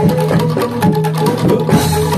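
Live Javanese traditional dance music played as accompaniment: regular sharp drum and clacking percussion strokes, including the kendang, over steady held low and middle tones. A brief bright hiss rises near the end.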